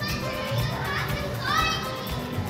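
Children's high-pitched voices calling and squealing, with a rising shriek about one and a half seconds in, over background music.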